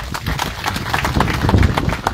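Crowd applauding, many hands clapping together.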